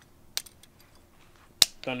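Handheld PVC pipe cutter closing through rubber weather stripping: a faint click about a third of a second in, then one sharp, loud snap near the end as the blade cuts through.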